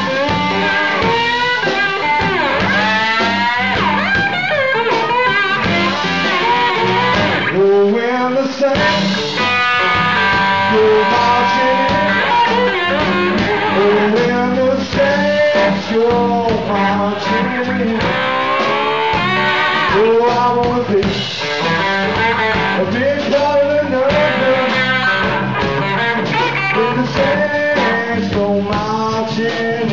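Small live rock band playing a bluesy number: an electric guitar plays lead with many bent, sliding notes over bass and drums.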